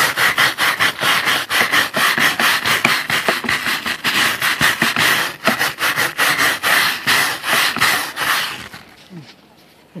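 Stiff bristle brush scrubbing alcohol-wetted old lap sealant along a screwed roof rail, in rapid back-and-forth strokes about four or five a second. The scrubbing stops shortly before the end.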